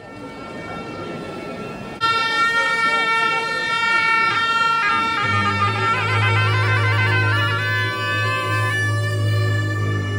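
Tibetan gyaling, the double-reed monastery horn, starts suddenly about two seconds in. It plays a loud, reedy, bagpipe-like melody of held notes with fast wavering ornaments. About halfway through, a low steady drone joins it, over crowd murmur.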